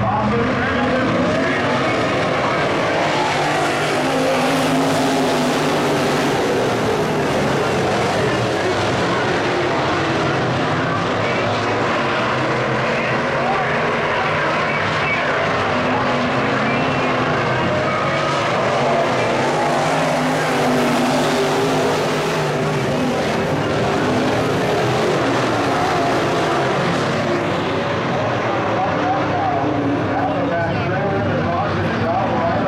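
A field of IMCA Modified dirt-track race cars with V8 engines running together around the oval: a steady, layered engine noise with several pitches rising and falling as the cars pass.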